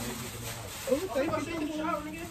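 A soft, hiss-like rustle of gift packaging being opened, with quiet voices in the room from about halfway through.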